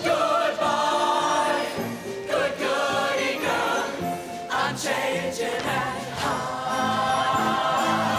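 Mixed-voice show choir singing together in short held chords.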